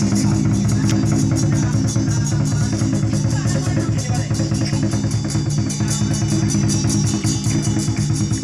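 Loud percussion music with a fast, even drumbeat that does not let up, the kind played to accompany a Chinese dragon (liong) dance.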